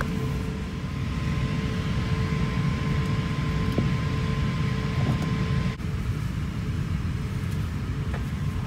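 Steady airliner cabin noise inside an Airbus A350-900: a low rumble with a hiss of air, and two faint steady hums through it. The sound breaks briefly about six seconds in.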